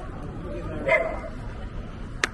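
A dog barks once, about a second in, over low street noise.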